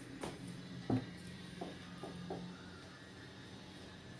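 A stainless-steel mixer-grinder jar knocking against a glass bowl about five times as ground flaxseed powder is tipped and scraped out of it, the loudest knock about a second in. A faint low hum runs underneath for the first two and a half seconds.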